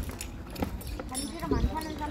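Background voices of people talking, strongest near the end, with a few sharp knocks and clicks.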